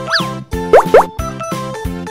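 Bouncy children's background music with a steady beat, overlaid with cartoon sound effects: a short pitch glide near the start, then two quick upward swoops just under a second in, the loudest sounds.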